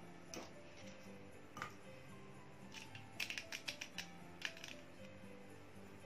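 Faint background music with light clicks of small plastic jelly moulds being handled and set down on a metal tray, in a quick cluster about three seconds in.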